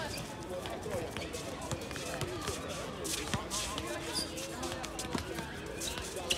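Basketball bouncing on a hard outdoor court during a game: scattered sharp knocks, a louder one right at the start, under indistinct players' voices.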